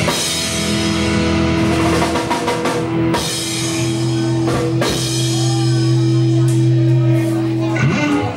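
Live psychobilly band of electric guitar, bass guitar and drum kit playing out the end of a song: from about three seconds in a chord is held while the drums keep hitting, and the whole band stops together right at the end.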